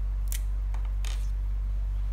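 Steady low mains hum, with two brief papery rustles as a hand and pen move onto a sheet of paper, about a third of a second in and again about a second in.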